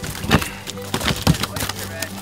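Clumps of live oysters and shell tumbling out of a cast net onto a boat deck, clattering and knocking in several sharp hits.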